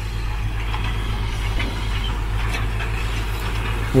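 Steady low engine drone, heard from inside a vehicle's cab.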